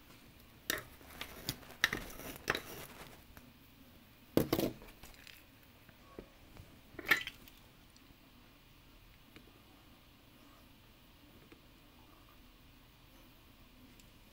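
Light metallic clinks and taps of small soldering tools being handled and set down on a workbench, in a quick cluster and then two single knocks a couple of seconds apart, all within the first half.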